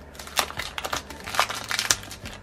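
Clear plastic packaging bag crinkling under a hand as a packaged item is pressed and handled, in an irregular run of crackles that grows louder about halfway through and toward the end.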